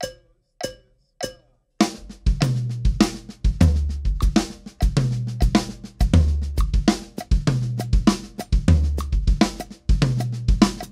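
Drum kit at 100 bpm: three evenly spaced count-in clicks, then from about two seconds in a steady run of sixteenth-note snare strokes in a paradiddle-based sticking (right, left, left, bass drum), with accented snare notes and pairs of bass drum kicks that shift the accent along the beat.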